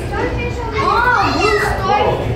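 Children's voices and chatter echoing in a busy hall. About a second in, one child's high-pitched voice rises and falls in a long drawn-out call.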